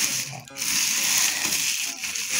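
Clear plastic film wrapping a PC case crinkling as hands press and pull at it, a continuous crackle with a brief break about half a second in.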